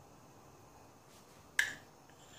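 A teaspoon striking the ceramic cup of melted white chocolate: a single sharp clink with a short ring about one and a half seconds in, against a quiet background.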